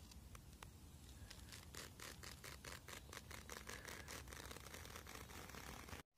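Near silence, with a faint run of rapid, evenly spaced ticks through the middle.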